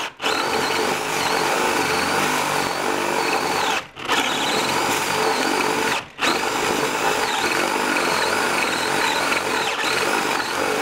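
Cordless drill boring a 1-5/8 inch Forstner bit into a wooden board, the motor whine wavering up and down as the bit loads in the wood. The drill stops briefly three times: right at the start, about four seconds in and about six seconds in, each time starting up again at once.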